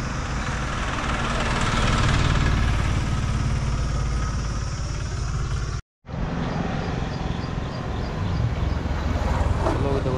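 Roadside traffic noise mixed with wind rumbling on the microphone, swelling as a vehicle passes about two seconds in. The sound drops out completely for a moment just before the middle, then the same road noise carries on.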